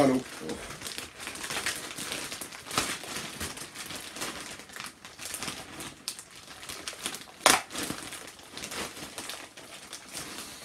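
Large plastic popcorn bag crinkling and rustling irregularly as it is pulled and twisted at its closed top to get it open. A few sharper crackles stand out, the loudest about seven and a half seconds in.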